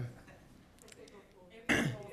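Low room tone, then a man clears his throat once, suddenly and loudly, near the end.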